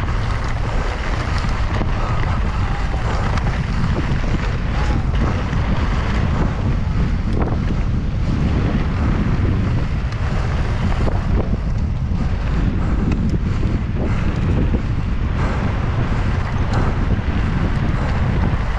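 Wind buffeting an action camera's microphone as a mountain bike descends at speed, over a steady rumble and rattle of tyres and frame on a loose dirt and gravel trail.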